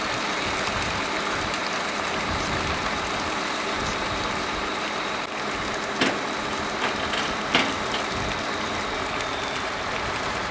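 Flatbed tow truck's engine idling steadily under a constant hiss, with a few short knocks about six and seven and a half seconds in.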